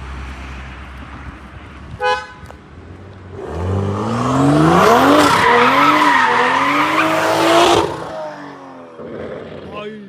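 BMW M340i's 3-litre turbocharged inline-six accelerating hard past, its note rising through the revs with two dips at upshifts, loud, then cutting off suddenly.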